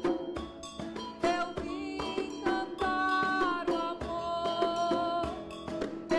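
Live acoustic music: an acoustic guitar strummed in rhythm with a djembe hand drum, and a voice singing long held notes in the middle.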